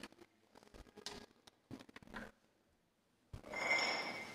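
Faint knocks and handling noise as an acoustic guitar is lifted off its stand. About three seconds in, a louder general rustle and shuffle rises as a seated congregation gets to its feet.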